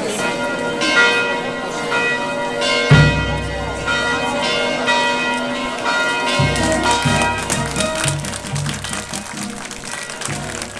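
Church bells ringing, with new strikes about once a second over a dense wash of overlapping ringing. Deep brass-band notes join about three seconds in and carry on under the bells.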